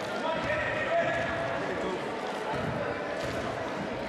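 A basketball bounced on the hardwood gym floor at the free-throw line as the shooter settles before her shot, over a steady murmur of crowd voices in the gym.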